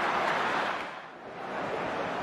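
Broadcast stadium background noise, a steady hiss-like wash, that fades down about a second in at a cut between highlight clips and then comes back.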